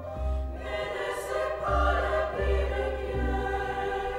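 Women's choir singing held chords in harmony, with low double bass notes underneath that change every second or so.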